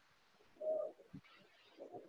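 A single short bird call about half a second in, heard over a video-call microphone against faint background hiss.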